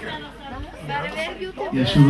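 People chattering, several voices talking at once.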